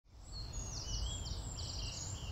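Songbirds singing in trees: high, thin chirps and short rapid trills, several overlapping, over a steady low outdoor rumble.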